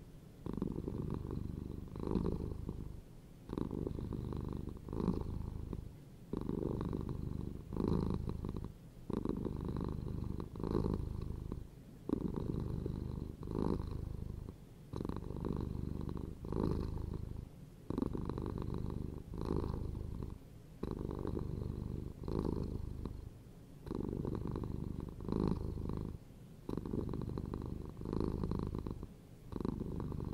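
Tabby-and-white domestic cat purring close to the microphone: a low, continuous rumble that swells and dips about once a second, with a short break between one breath and the next.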